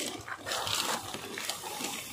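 Tall grass and weeds rustling and swishing against the body and phone as someone pushes through them on foot, with irregular soft crackles.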